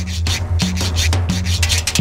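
Instrumental cumbia with a güiro being scraped in a quick, steady rhythm over a bass line that repeats about every two-thirds of a second.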